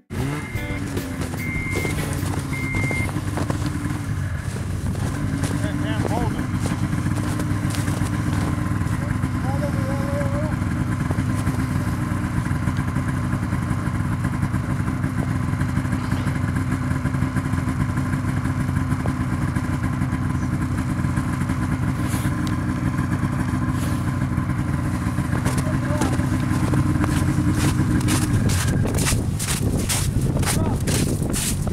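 Snowmobile engine running steadily at a near-constant idle, with a slight waver in pitch over the first few seconds.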